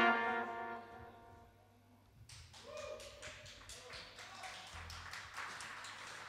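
The band's final held chord, led by trumpet and trombone, fading out over about the first second. Then near quiet with faint stage clicks and a short soft tone or two.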